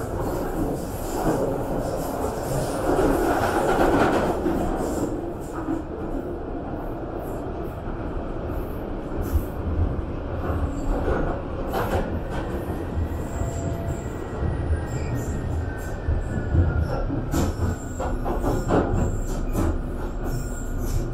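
London Underground Northern Line train (1995 Tube Stock) running through a tunnel, heard from inside the carriage: a steady rumble of wheels and running gear, louder in the first few seconds, with scattered sharp knocks from the rails. A faint high whine rises and falls slightly about midway through.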